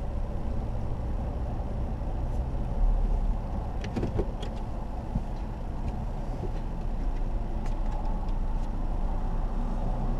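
Car engine running at low revs, heard inside the cabin as a steady low rumble, with a few light clicks about four seconds in and again near the end.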